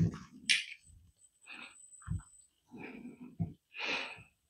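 A run of short, irregular handling sounds as a stainless steel syringe is picked up and dipped into a plastic bottle of hydraulic fluid to draw oil, with a brief hiss about half a second in.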